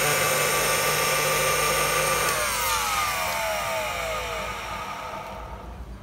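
Electric spindle drink mixer running steadily, mixing a cocktail in a steel cup. A little over two seconds in it is switched off, and its whine falls in pitch as the motor spins down.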